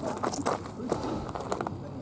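Faint voices with a few light knocks and clicks from handling the hinged plywood lid of a composting-toilet box.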